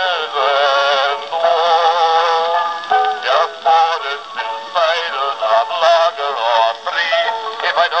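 A Columbia Q Graphophone playing a two-minute black wax cylinder through its horn: a baritone singing with a wavering vibrato. The sound is thin, with no bass.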